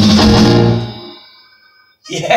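Band music with electric guitar ending on a final chord that rings on, then fades away to near silence over about a second.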